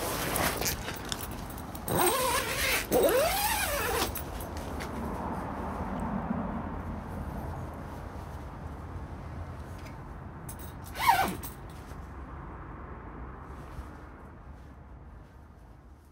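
Plastic sheeting of a pop-up shelter tent rustling and crinkling as its front is pulled shut, with a short falling squeak about eleven seconds in; the sound then fades away.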